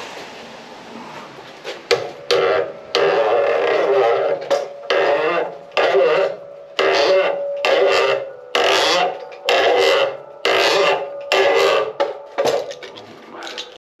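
A chisel clamped to a homemade rounding jig shaving the end of a round stick as the jig is twisted around it by hand, cutting it down to a 25 mm pin. The cut comes as a run of short rasping strokes, roughly one a second, starting about two seconds in, each with a slight squeal.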